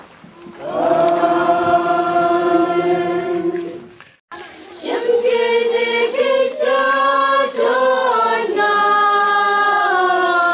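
A choir singing a hymn in chorus, in long held notes. The singing breaks off sharply about four seconds in, then resumes, moving from note to note.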